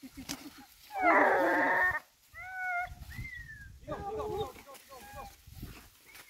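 Hunting dogs yelping and whining as they work a wild boar hunt. About a second in there is a loud, drawn-out one-second call, followed by several short, high, curving cries.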